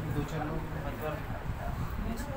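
Indistinct voices talking in a room, low and unclear, with no single clear speaker.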